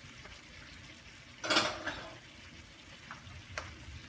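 Cubed pork frying in a pan with a scoop of lard melting on top: a faint, steady sizzle. A short rustling burst comes about one and a half seconds in, and two light clicks follow near the end.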